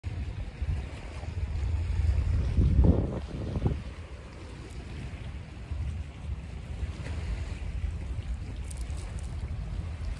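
Wind buffeting a phone's microphone in uneven gusts, a low rumble that is heaviest about two to three seconds in and then settles to a steadier rush.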